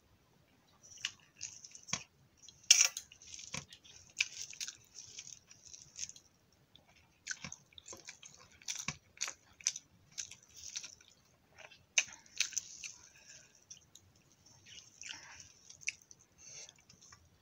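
Close-miked sounds of a rice meal eaten by hand: wet squishes, smacks and clicks at an irregular pace. They come from fingers mixing rice with fried egg and aloo posto, and from chewing.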